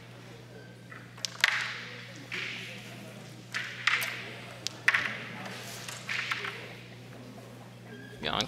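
Crokinole discs being flicked across a wooden board: a handful of sharp clicks as the shooter's finger strikes a disc and discs knock into each other and the board's pegs.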